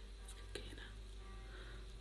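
Faint breath and small mouth clicks from a man between sentences, over a low steady hum.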